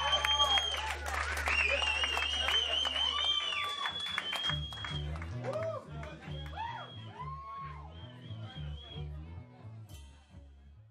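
Rock band music with a sung vocal, bass and drums with cymbal hits, fading out steadily over the closing seconds.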